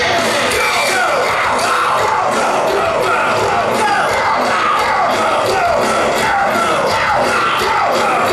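A rock band playing live through a PA, loud and steady, with a crowd audible beneath it. A repeated falling figure sounds over the band throughout.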